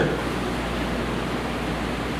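Steady, even hiss with a low hum beneath it: background room noise with no speech.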